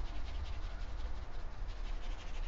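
Brown pencil scratching on sketchbook paper in quick, short shading strokes, over a low steady rumble.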